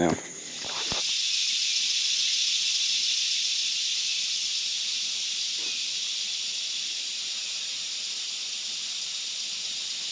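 Steady, high-pitched hiss of a summer insect chorus, coming up loud about a second in and easing off slowly.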